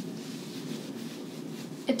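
Quiet room tone, a faint steady background hiss with no distinct sounds, until a woman starts speaking near the end.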